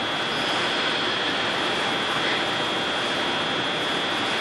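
Steady background room noise with no speech: an even hiss at a constant level, with a thin, high, steady whine running through it.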